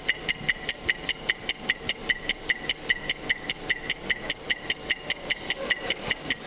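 Electronic clock-ticking sound effect, a steady run of sharp ticks about four a second, played as a countdown cue while the teams think over their answer.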